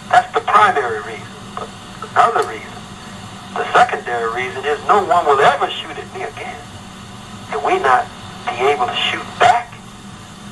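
A person talking in short phrases with pauses, in a low-fidelity taped recording that sounds like radio or telephone audio.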